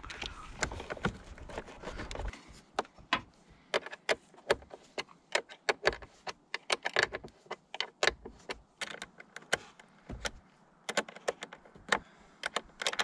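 Metal clicks and clinks from a hand tool and battery cable clamps as the cables are refitted and tightened on the terminals of a new truck battery. The clicks are irregular, some coming in quick runs.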